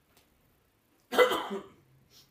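A man clears his throat once with a short, loud cough about a second in.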